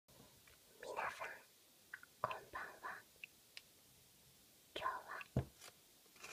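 A person whispering in three short groups of soft phrases, with a brief sharp tap near the end.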